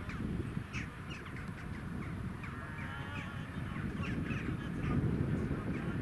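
Several short bird calls over a steady low rumble of wind and a gathered crowd.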